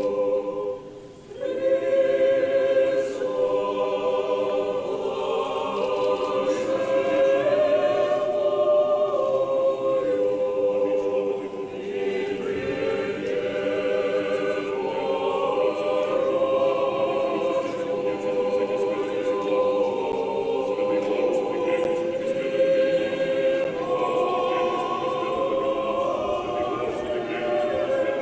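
Russian Orthodox church choir singing unaccompanied in sustained multi-part chords, with a brief break about a second in before the voices come back in.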